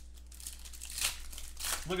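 Foil wrapper of a trading-card pack crinkling as it is pulled open by hand, with two sharper crackles, one about a second in and one near the end.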